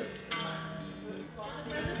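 Guitar string plucked and left to ring while its intonation is checked. The note is compared at two points along the neck, where sharpness means the string length is set too short.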